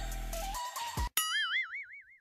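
Bass-heavy pop music cuts off about a second in, followed by a cartoon 'boing' sound effect: a springy tone wobbling up and down in pitch and fading away.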